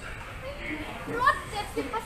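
A woman speaking briefly in Thai over the low hubbub of a busy shop floor, with other voices in the background.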